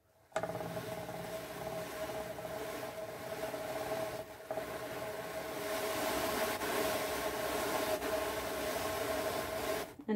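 Ashford drum carder cranked by hand, its carding drums turning with a steady rubbing whir as viscose fibre is drawn onto the large drum. The sound starts abruptly just after the beginning and dips briefly about four seconds in.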